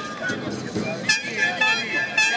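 Short, high horn toots, a few of them in the second half, over the voices of a crowd.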